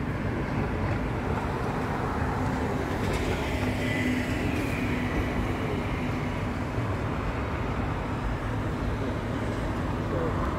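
Steady low rumbling urban background noise outdoors, with no distinct events.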